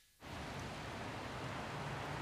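Small X-Bus electric light van rolling over asphalt toward the microphone: a steady hiss of tyre and road noise with a faint low hum, starting a moment in and growing slowly louder.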